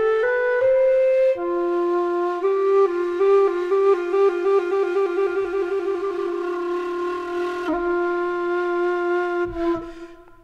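Sampled dongxiao, the Chinese end-blown bamboo flute, played from a virtual instrument: a few short notes, then one long held note that changes character midway as articulation key switches are pressed during it, with a stretch of rapid fluttering wavering. The note fades out near the end.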